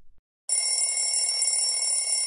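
An alarm-clock bell ringing continuously, starting about half a second in.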